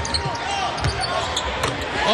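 A basketball being dribbled on a hardwood court, a few low thuds, over the steady background noise of an arena, with faint voices.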